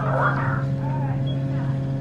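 Steady low machine-like hum of the ride's pre-show room, with faint voices of people murmuring over it.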